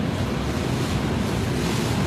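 Steady rushing noise with no distinct events, the background roar of a restaurant kitchen.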